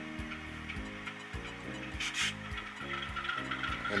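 Quiet, low, stepping tones with a brief hiss about halfway through. This is likely soft background music mixed with the sound of model diesel locomotives' sound decoders turned down to a low volume, which is called really quiet.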